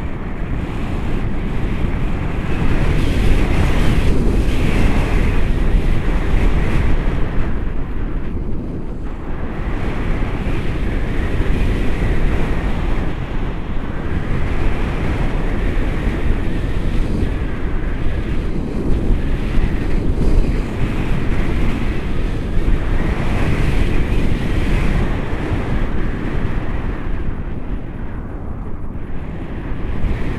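Wind rushing over an action camera's microphone in flight under a tandem paraglider, a loud, dense noise that swells and eases every few seconds.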